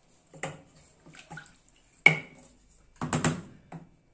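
A wooden spoon working in a stainless steel pot of broth: liquid sloshing and a handful of knocks against the pot. One sharper knock with a short ring comes about two seconds in, and a busier cluster of sloshes and knocks follows near the end.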